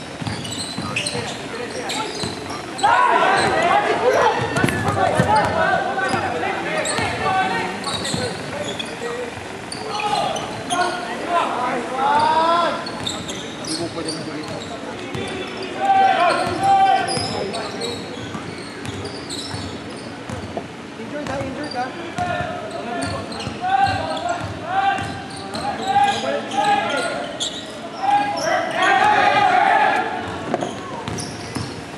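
A basketball bouncing on a hardwood court during play, amid players' shouts, echoing in a large gym.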